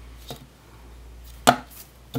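Hard plastic clack of a FansProject Tailclub toy figure being set down on a desk: one sharp click about one and a half seconds in, with a faint tap before it and another just after.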